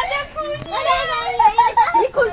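A group of women and children talking and calling out together in high voices.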